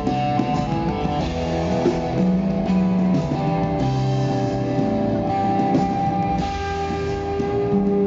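Live rock band playing an instrumental passage: electric guitar holding long, sustained notes over a drum kit.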